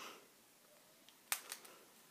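Faint handling sounds of hands gathering braided hair into a ponytail, with two sharp clicks about a second and a half in; the first click is the louder.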